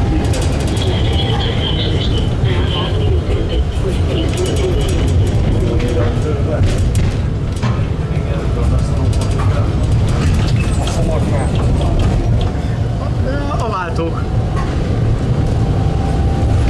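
A tram running on city track: a steady low rumble with repeated clicks and knocks as its wheels cross rail joints and the crossing rails of a junction. A high, thin whine sounds for a few seconds about a second in.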